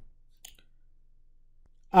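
A short sharp click at the start and a fainter one about half a second in, then quiet until a voice starts speaking at the very end.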